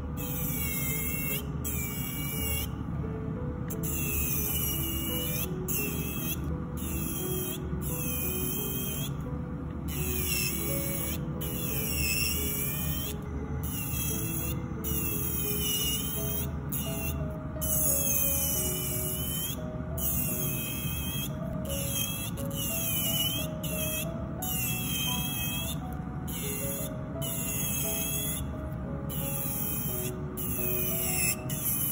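MelodySusie Jade electric nail file (e-file) running with a small bit worked around the cuticles: a high whine in short passes that dips and recovers in pitch, with brief breaks between passes. Background music with a simple melody plays under it.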